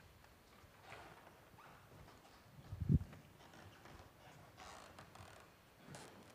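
Soft, scattered footsteps and faint handling clatter in a quiet room, with one heavier low thump about three seconds in.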